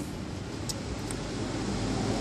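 Steady outdoor background rumble with a faint hiss, and two faint clicks near the middle.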